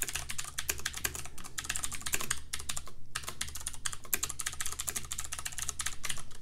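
Fast typing on a computer keyboard: a dense run of key clicks with a couple of short pauses midway, over a low steady hum.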